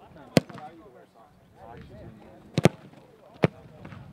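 Footballs being placekicked off tees: a sharp thud of boot on ball about half a second in, then three more sharp kick thuds later, a quick double near the middle-to-late part and a single one near the end.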